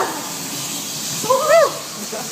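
A potassium nitrate and sugar smoke bomb burning with a steady hiss. A person gives one short, high call that rises and falls about a second and a half in.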